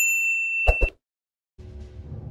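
A notification-bell 'ding' sound effect: one bright ringing tone lasting just under a second, with two quick clicks near its end. A low, dense sound starts faintly shortly before the end.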